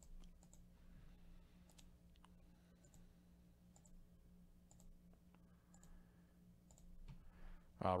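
Faint computer mouse clicks, about one a second, as a button is clicked over and over, with a low steady electrical hum beneath.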